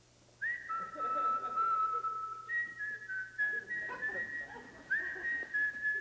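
A person whistling a slow tune of long held notes, some of them starting with a quick upward slide.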